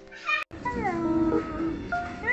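A young cat meowing: a short call, then after a sudden break a drawn-out meow that falls in pitch, over background music.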